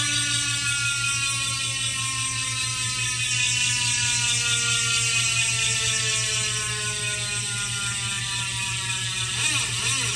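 Rear wheel's 52-tooth ratchet freehub buzzing as the wheel coasts, its pitch falling slowly as the wheel slows. Near the end the pitch starts to waver.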